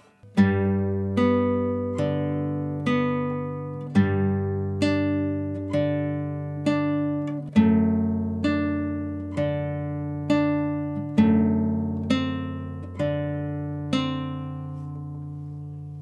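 Nylon-string classical guitar played fingerstyle in a slow arpeggio. Single notes are plucked about once a second over ringing bass notes, moving through a short chord progression. The last note is left to ring out near the end.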